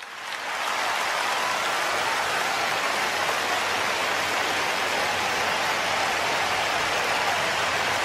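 Large audience applauding, building over the first second into a steady, dense clapping that holds.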